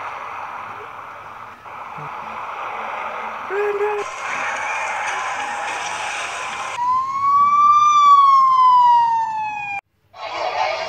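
Emergency vehicle siren sound effect: one tone that rises slightly and then falls steadily for about three seconds, cutting off suddenly. A steady noisy background comes before it.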